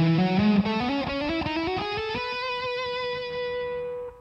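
Electric guitar playing a fast legato run of hammer-ons in sixteenth-note triplets, climbing in pitch. It ends on one note held and ringing for about the last two seconds.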